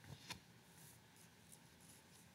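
Faint paper rustle of book pages being handled, with two soft clicks just after the start, then near silence.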